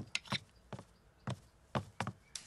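Light wooden taps, about half a dozen short knocks at uneven intervals, as a cartoon sound effect.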